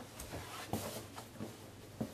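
A stiff, interfaced fabric placemat being turned over and handled on a table: a brief rustle with a few light knocks, the loudest near the middle and at the end.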